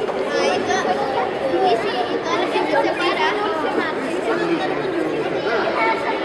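Crowd chatter: many voices talking at once at a steady level, no single voice standing out.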